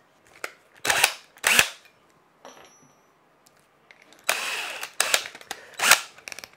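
Cordless drill handled for a bit change: two sharp knocks about a second in, then a harsh rattling burst lasting about a second from the keyless chuck as it is worked open, and another just before the end.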